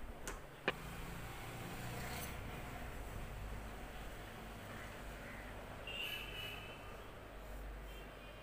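A steady low background rumble, with two sharp clicks close together near the start and a short, high-pitched call about six seconds in.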